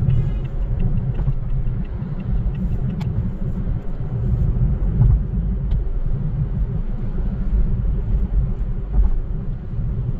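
Steady low rumble of a car cruising at speed on a smooth expressway, tyre and engine noise heard from inside the cabin, with a couple of faint clicks.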